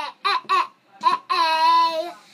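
A young boy's high voice singing out wordless syllables: two short ones, then one long held note in the second half.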